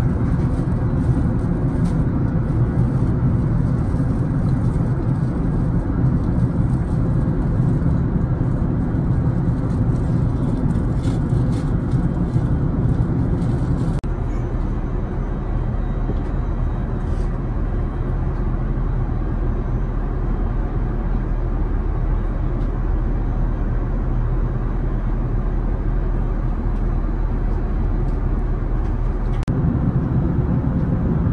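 Steady low drone of cabin noise aboard an Airbus A380 in cruise: engine and airflow noise heard inside the cabin. Its tone shifts slightly about halfway through, at a cut.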